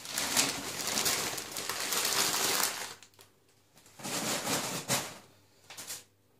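Newspaper rustling and crinkling as it is pulled off a cooking pot and bundled up. It runs for about three seconds, comes again for about a second around the fourth second, and a few small clicks follow near the end.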